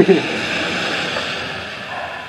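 A man's short laugh, trailing into a long breathy exhale that holds for about a second and then fades.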